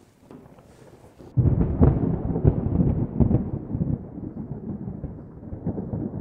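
Thunder sound effect: a sudden low rumble with crackling, starting about a second and a half in and slowly dying away.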